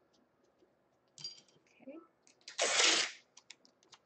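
Masking tape and plastic wrap being handled on a canvas frame: a few small clicks and rustles, then a short, loud tearing noise of just over half a second about two and a half seconds in, followed by several light clicks.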